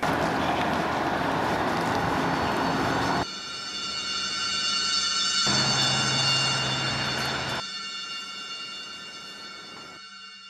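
Horror-film sound design: loud rushing noise that cuts off sharply about three seconds in, then an eerie sustained drone of several high, steady squeal-like tones. A low hum joins it in the middle and drops out, and the drone fades toward the end.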